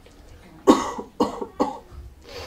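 A person coughing three times in quick succession, each cough sharp at the start and fading quickly.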